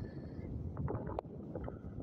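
Wind rumbling on a phone microphone, with a few faint clicks.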